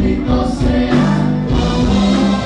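Live Tejano band playing, with a male vocalist singing into a microphone over the band.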